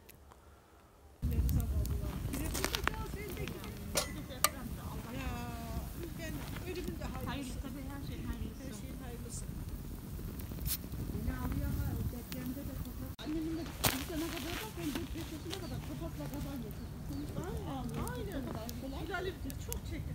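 Wood campfire burning, with occasional sharp crackles and pops over a steady low rumble, after about a second of near silence. Voices talk faintly in the background.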